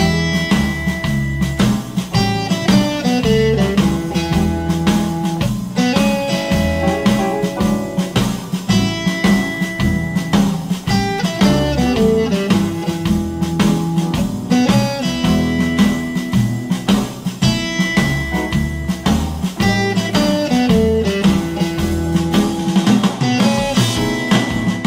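Electric guitar, a Fender Telecaster, picking the same short single-note blues riff in E over and over over a swing blues backing track with bass and drums.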